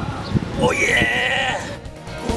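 A voice letting out one drawn-out "oh", held for about a second with a slightly wavering pitch, starting about half a second in and fading out.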